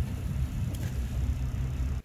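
Motorboat engine running slowly at trolling speed, a steady low rumble.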